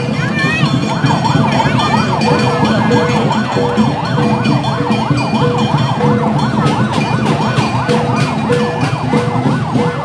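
An emergency siren in a fast up-and-down warble, over crowd noise and festival drumming. Sharp percussion strikes join in from about seven seconds in.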